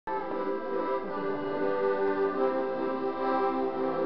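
Folk ensemble playing a Lithuanian song, led by an accordion's steady held notes that move from note to note every fraction of a second.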